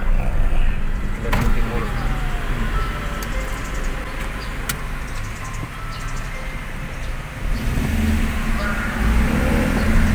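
Car engine and road rumble heard from inside the cabin, steady and low, with a couple of sharp clicks. The engine hum gets louder in the last couple of seconds.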